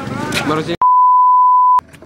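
Talk breaks off just under a second in and a loud, steady single-pitch bleep tone is cut into the soundtrack, silencing everything else for about a second. It stops with a click.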